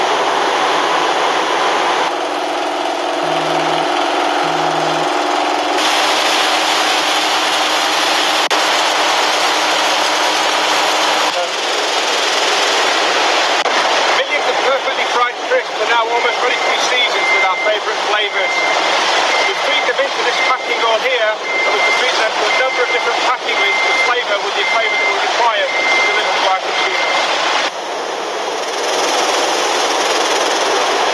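Loud, steady noise of crisp-production machinery and conveyors, its character changing at each cut. About halfway in, a rapid clatter sets in, and a short high electronic beep repeats over and over for about ten seconds.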